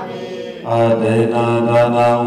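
Buddhist monk chanting into a microphone in a low, steady, drawn-out monotone, resuming after a short pause about two-thirds of a second in.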